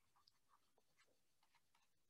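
Near silence, with a few faint ticks of a stylus writing on a pen tablet.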